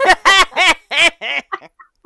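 Loud laughter: a quick run of about five pitched "ha" pulses that dies away about a second and a half in.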